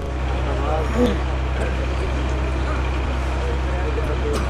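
A steady low hum with room noise, and faint voices murmuring under it during the first second or so.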